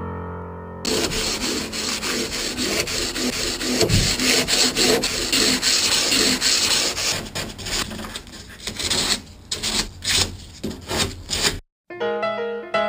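Sandpaper rubbed by hand over the plywood and epoxy fillets inside a small stitch-and-glue boat hull. It comes as quick back-and-forth strokes that grow more broken up and spaced out near the end, and it stops suddenly. The last of a piano tune plays for the first second.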